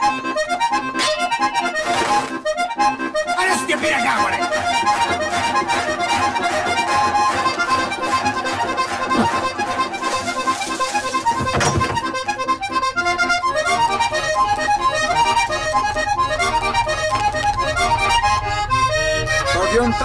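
Diatonic button accordion playing a fast vallenato melody of quick runs of notes. A low rhythmic accompaniment comes in about halfway through.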